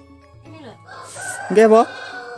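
A rooster crowing in the second half, ending in a long held note that slides slowly down in pitch.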